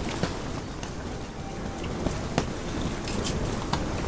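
Close handling noise as an ice-fishing spinning rod and reel are worked: a steady low rumble of clothing and gear rustle with a few sharp clicks.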